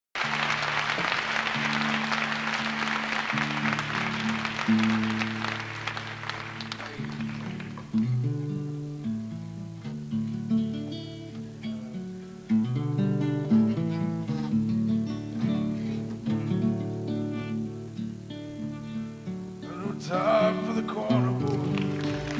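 Acoustic guitar and upright bass playing a slow instrumental intro, with audience applause over the first several seconds that dies away about eight seconds in. A man's singing voice comes in near the end.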